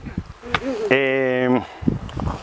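A man's voice holding a long hesitation "uh", a steady hum of well under a second that drops in pitch as it ends.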